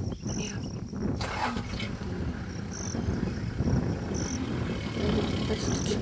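Safari game-drive vehicle's engine idling with a steady low rumble, with short high chirps every second or so.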